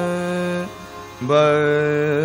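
Hindustani classical vocal music: a singer holds a long steady note that ends a little after half a second in, and after a short pause begins another held note, with the sarangi shadowing the voice over a tanpura drone.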